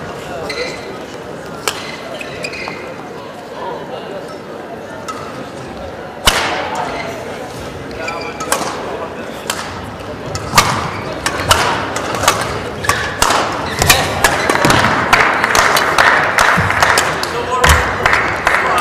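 Badminton rally: from about six seconds in, rackets strike the shuttlecock with sharp cracks roughly once a second, echoing in a large sports hall. A murmur of hall noise rises toward the end.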